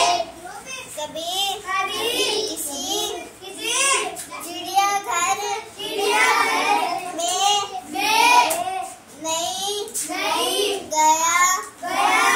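A young girl singing solo, her high voice rising and falling through short phrases with brief pauses between them.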